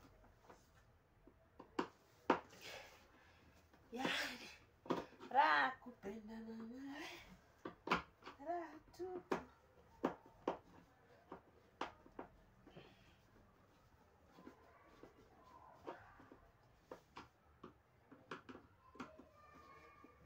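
Scattered clicks and knocks of plastic and metal parts being handled inside an opened-up washing machine, while its hoses are worked loose. A voice is heard in the background for a few seconds near the start.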